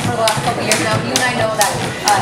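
Jump rope slapping the gym floor in a steady rhythm of about two sharp clicks a second, with voices talking over it.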